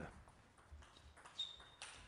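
Near silence: faint sports-hall room tone, with one brief high-pitched squeak about a second and a half in.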